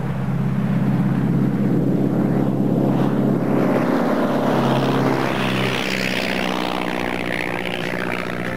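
A de Havilland Puss Moth's single piston engine and propeller at full takeoff power as the light aircraft runs past and lifts off. The engine note drops slightly in pitch about six seconds in as it goes by and climbs away.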